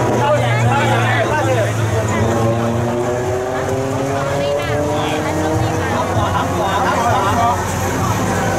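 People talking over a steady low engine-like hum whose pitch rises slowly through the middle.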